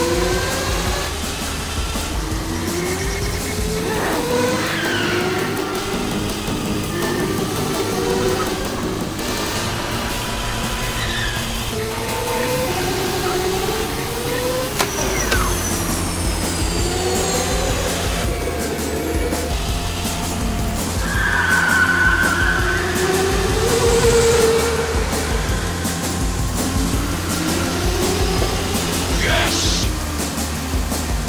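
Go-kart motors revving in repeated rising whines over background music, with a sharp knock about halfway through.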